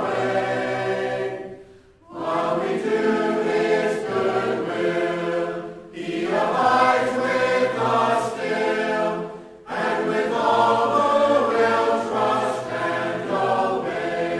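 A choir singing in phrases of about four seconds, with brief pauses between the lines.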